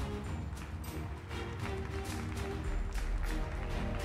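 Stage music with sustained tones, a deep bass and a steady beat.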